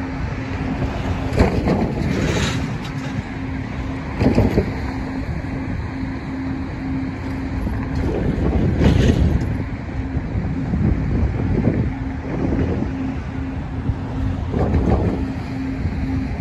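Gusts of wind buffeting the microphone, swelling strongest around two, four and nine seconds in. Beneath them a faint low tone pulses about twice a second.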